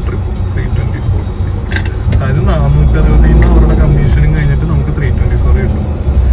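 Loud, deep rumble of a car heard from inside the cabin, with an indistinct voice over it.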